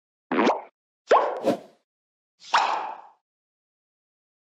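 Three short cartoon-like pop sound effects about a second apart, each a quick upward-sweeping 'bloop'.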